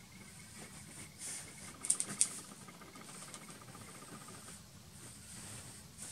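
Pencil point scratching over paper as it traces an outline firmly through graphite transfer paper, with a few sharp ticks about two seconds in.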